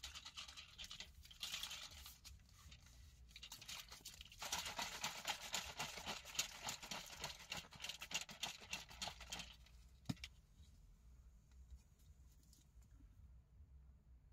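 Plastic shaker bottle being shaken to mix a pre-workout drink: a fast rattle in two spells, the second longer and louder, ending about two-thirds in. Then a single snap, like the flip-top lid being opened.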